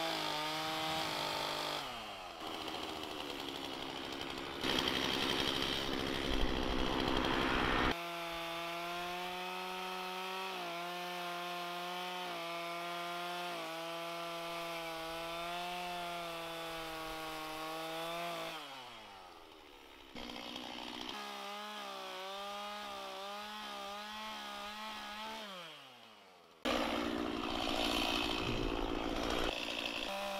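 Stihl two-stroke chainsaw running at high revs with a wavering engine note, cutting into a hollow water oak limb. The louder, rougher stretches about five to eight seconds in and near the end are the chain biting into the wood. Twice the note slides down as the throttle is let off.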